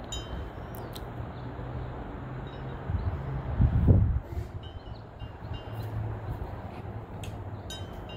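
A few short, high chiming notes ringing out at scattered moments over a steady low hum, with a loud low thump about halfway through.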